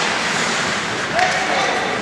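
Spectators' voices in the stands of an indoor ice rink during a hockey game, over the hall's steady echoing background noise. A voice calls out about a second in.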